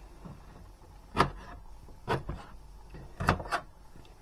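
Kitchen knife cutting through broccolini stems onto a cutting board: a few separate sharp chops, the first the loudest.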